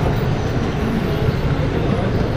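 Steady rumble of an HO-scale model train's wheels rolling along the track, picked up close by from a car riding on the train.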